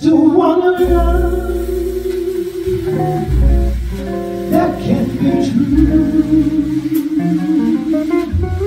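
Live jazz ballad: a female vocalist sings a slow line, holding a long note with vibrato in the second half, over electric archtop guitar and plucked upright bass.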